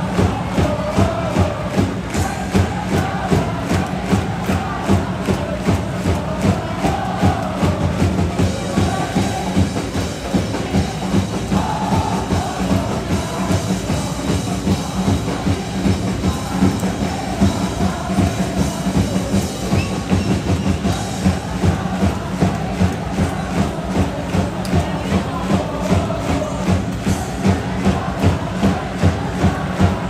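Football supporters' end singing a chant in unison over a steady drum beat, about two to three beats a second.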